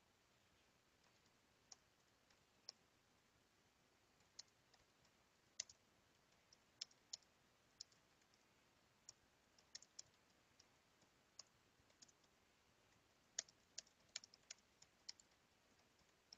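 Faint, irregular clicking of computer keys and buttons over near silence: scattered single clicks, coming quicker in a short run about thirteen seconds in.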